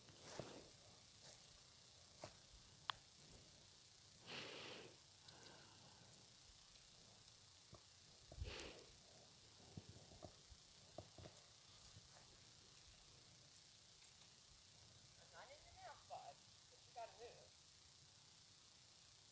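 Near silence: outdoor room tone with a few faint, brief noises and faint wavering sounds near the end.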